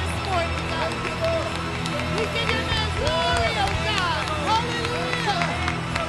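Live gospel worship music: a woman's voice sings gliding, ad-lib phrases into a microphone over sustained accompaniment chords that hold steady underneath.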